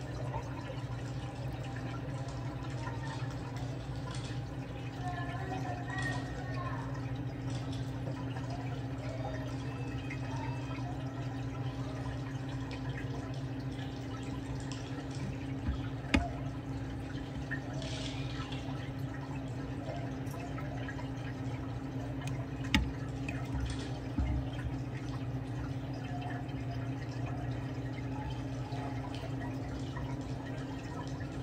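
Steady hum of a saltwater reef aquarium's pumps, with water trickling and dripping, and a couple of sharp clicks in the second half.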